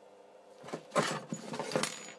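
Small metal screws clinking as hands handle them: a quick run of clicks and rustles that starts about half a second in.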